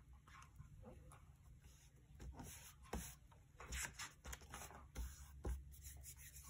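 Paper rubbing and rustling as a hand presses and smooths a glued paper cut-out onto a journal page, with a few soft taps.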